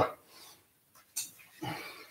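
A man breathing with effort while holding a single-leg glute bridge: a short sharp exhale about a second in, then a brief low voiced grunt near the end.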